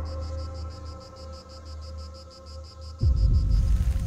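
Crickets chirping in an even pulse, about eight a second, over a low steady drone. About three seconds in, a sudden loud low boom takes over and the chirping fades out.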